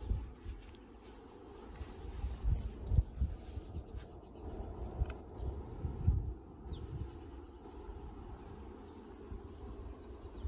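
A horse grazing close by, tearing and chewing grass, with irregular low thumps, the loudest about three seconds in. A few faint bird chirps are heard in the background.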